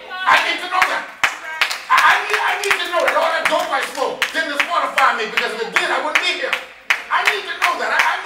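Scattered hand clapping from a congregation, irregular claps several a second, mixed with people's voices.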